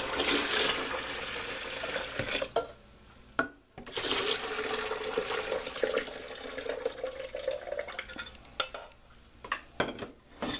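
Tea poured in a stream from a stainless steel saucepan into plastic pitchers: one pour, a short pause about three seconds in, then a second, longer pour that tapers off near the end.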